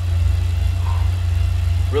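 Bicycle on a stationary trainer being pedalled, its resistance unit giving a steady low drone.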